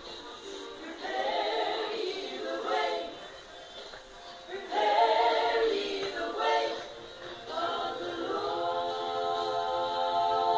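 A small church vocal ensemble singing in rehearsal, in short phrases with brief breaks between them, ending on a held chord.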